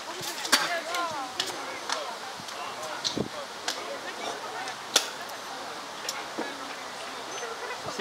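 Open-air ambience with distant voices and scattered sharp clacks, one every second or so, the loudest about five seconds in.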